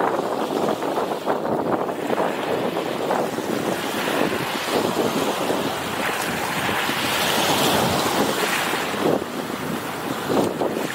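Small waves washing up a sandy beach, a steady rushing surf with slow surges, one swelling louder about seven seconds in. Wind rumbles on the microphone underneath.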